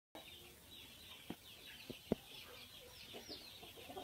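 Chickens clucking in short low notes from about three seconds in, over a run of faint, high, falling chirps. There are three sharp clicks between one and two seconds in, the last the loudest.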